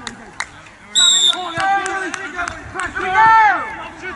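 Referee's whistle blown once in a short, steady blast about a second in, signalling kick-off. Men's voices call across the pitch around it, with one loud shout near the end.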